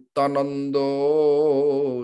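A man singing a Bengali devotional verse solo and unaccompanied: a short phrase, then a long drawn-out note with a slowly wavering pitch.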